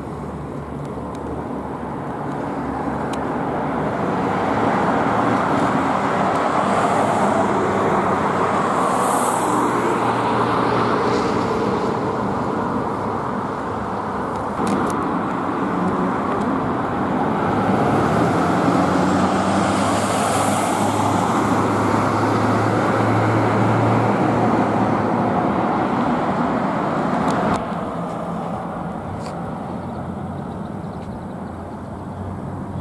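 Road traffic: cars passing on the street, the tyre and engine noise swelling and easing as they go by, with a low engine drone in the second half. The noise drops off suddenly near the end.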